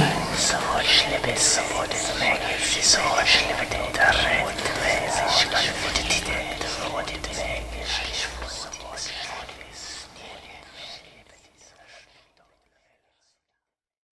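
A whispered voice repeating one short word, heard as "sweet", over and over in quick succession and fading out to silence about twelve seconds in.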